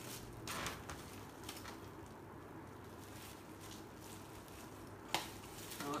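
Faint rustling and crinkling of plastic parcel packaging being opened by hand, with a few light taps near the start and a sharper click about five seconds in.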